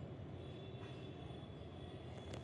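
Faint steady low rumble of background noise, with a thin high tone coming in about half a second in.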